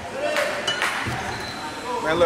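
Voices echoing in a large gymnasium during a basketball game, with a few short knocks and a brief high squeak in the first second.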